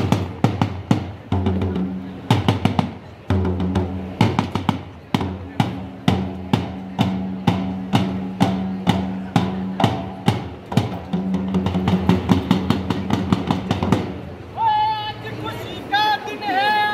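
Dhol drum beaten with a stick in a quick, steady rhythm, a low ringing tone sounding under the strokes, with a few short breaks in the beat. Near the end a loud voice starts calling out over the drumming.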